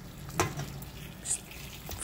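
Hot water pouring from a kettle spout onto raw chicken feet in a stainless steel bowl, a steady splashing hiss, with one sharp click about half a second in.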